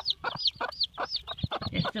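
Newly hatched chicks peeping: a quick, steady run of short, high chirps, several a second.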